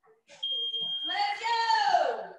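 A digital interval timer gives one steady high-pitched beep of under a second as it is reset for a new round. A louder, pitched, voice-like sound follows and falls in pitch near the end.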